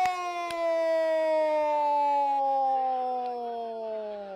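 A male football commentator's long held goal cry: one unbroken, loud shouted note that sinks slowly in pitch and drops off near the end.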